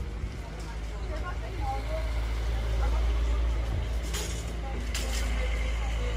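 A large vehicle's engine running nearby, a steady low drone that swells a little partway through. Near the end come two brief hissing bursts about a second apart.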